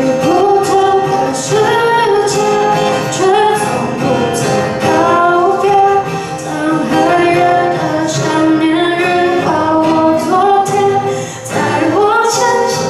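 A woman singing a Mandarin pop ballad into a microphone, accompanying herself on an acoustic guitar.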